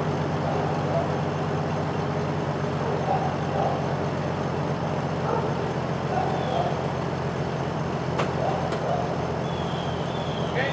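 A Jeep engine idling steadily, with faint voices in the background. A single sharp click comes about eight seconds in, and a brief high chirp near the end.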